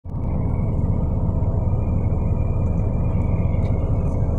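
Steady low rumble of a vehicle being driven along a dirt road, heard from inside the cabin: engine and road noise.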